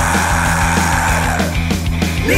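Heavy metal instrumental: distorted guitars over drums keeping a steady beat, with a long high lead note held until about one and a half seconds in.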